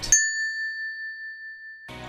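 A single bell-like ding sound effect: one strike that rings on as a clear tone, its higher overtones fading first. It cuts off suddenly just before the end.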